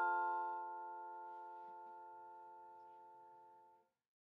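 Final chord of a Musser vibraphone ringing out, several notes held together and slowly fading, then cut off suddenly near the end.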